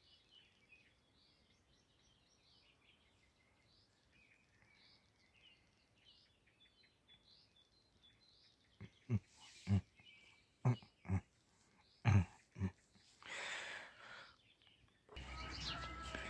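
Faint distant birds chirping, then from about nine seconds in a dog close to the microphone giving about six short huffs in four seconds, followed by a longer breathy exhale. Near the end there is a low rumble of the phone being moved.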